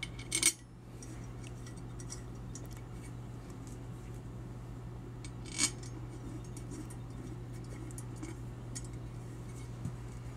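Small steel screws clinking against the aluminium bowl plate of an oil centrifuge as they are handled and turned in finger tight: a few sharp clicks about half a second in, another near the middle, and faint ticks between, over a steady low hum.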